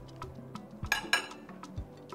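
Cutlery clinks sharply against a plate twice in quick succession about a second in, over quiet background music with a steady ticking beat.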